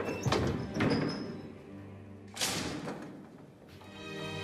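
Film score music thinning out while several heavy thuds sound, the loudest about two and a half seconds in.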